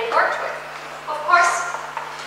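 A woman speaking, in short phrases with pauses between them.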